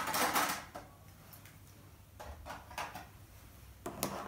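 Small plastic Playmobil figures being handled and set down on a tabletop: a brief rustle at the start, then a few light clicks and taps.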